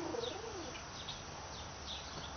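Faint birdsong: small birds chirping high and briefly, over and over, with a soft low call fading out in the first half second.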